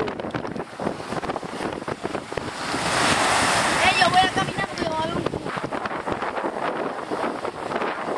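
Wind buffeting the microphone over small waves washing on a beach, with a louder surge of noise about three seconds in. Brief voices come through about four to five seconds in.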